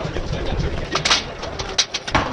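Skis knocking and clattering against a metal ski rack as they are set in, a few sharp knocks about a second in and again near the end, over faint crowd chatter.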